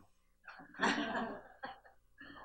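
A single short cough about a second in, followed by a small click.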